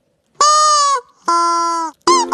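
A young kitten mewing twice: a higher cry that dips in pitch at its end, then a lower, steadier cry.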